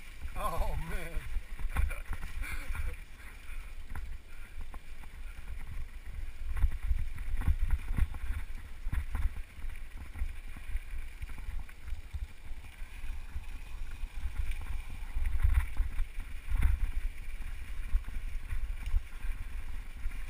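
Mountain bike rattling and thudding down a rough, rocky, snow-covered trail, picked up by the rider's GoPro as a low rumble with many knocks and wind on the microphone. About half a second in, a brief sound falls in pitch.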